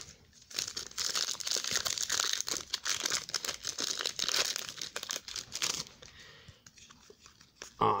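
Foil wrapper of a 2018 Panini Unparalleled football card pack being torn open and crinkled by hand. It makes a dense crackle for about five seconds, then dies away.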